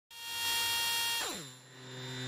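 Electronic intro tone: a steady pitched sound that drops sharply in pitch about a second in and settles into a low hum.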